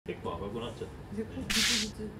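A short, sharp whoosh lasting under half a second, about one and a half seconds in, after a man's low speaking voice.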